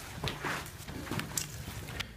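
Shuffling and scuffing of two people scrambling up off a carpeted floor, with a handful of short knocks like footsteps and shoes brushing the carpet.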